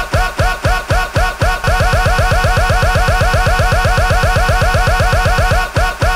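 A short slice of a rap track looped over and over by a DJ app's loop function: the same bass-heavy beat fragment repeats about four times a second, then from about a second and a half in doubles to about eight times a second, slowing back down near the end.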